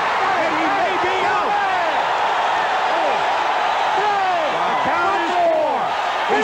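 Arena crowd cheering and yelling at a knockdown, many voices shouting at once in a steady, loud roar.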